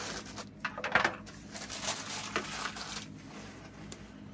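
Plastic bag crinkling and rustling as small plastic toy figures are pulled out of it, with a few light clicks of plastic. The crinkling comes in irregular spurts, loudest about a second in and again near the middle.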